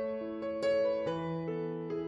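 Background piano music: a slow melody of single struck notes, about two a second, each left to ring.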